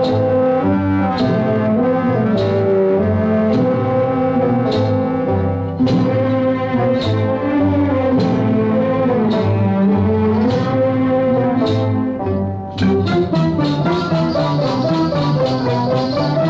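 Instrumental dance music from an orchestral film score: sustained melodic lines over a percussive stroke about once a second. Near the end the beat quickens into rapid strokes.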